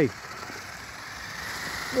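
Toy RC truck's electric motor and tyres on wet tarmac, a faint whir and hiss that grows louder as it drives into a puddle.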